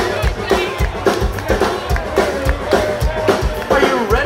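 Live glam-rock band playing loudly through a PA, with a steady drum beat under electric guitars and voices, and the audience clapping along.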